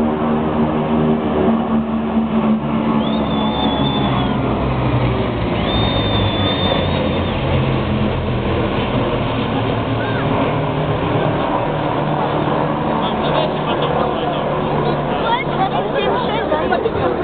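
Steady low drone of a formation of four-engine Ilyushin Il-76-family jets (a tanker group) passing low overhead. Crowd chatter runs underneath.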